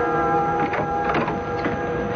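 Radio-drama music bridge ending on a held chord that fades, overlapped from about half a second in by a few short, irregular mechanical clatters of a sound effect.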